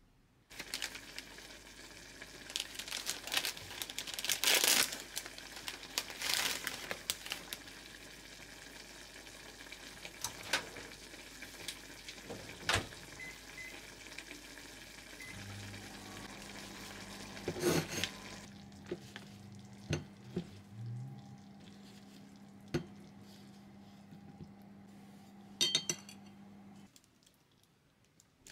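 Frozen gyoza frying in a pan, a steady sizzle broken by several clatters of pan and utensils. About fifteen seconds in, a steady low hum comes in and the sizzle grows fainter.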